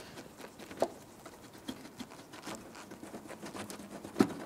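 Faint, scattered plastic clicks and ticks as a Subaru Outback's front bumper cover is tugged by hand away from the fender, working loose from its lock tabs, with one sharper click about a second in.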